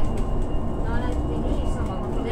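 Steady low rumble of a moving vehicle heard from inside its cabin, with people talking indistinctly over it.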